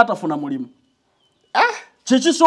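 A man's voice drawing out a spoken word with falling pitch. After about a second's pause comes one short rising call.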